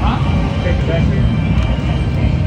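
Casino floor noise: steady background talk and slot-machine sounds, with a short falling electronic tone at the start as the video keno machine begins a new draw.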